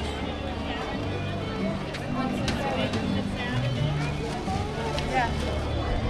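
Background music playing over the park's outdoor loudspeakers, its bass notes held and changing every half second or so, with the chatter of a walking crowd.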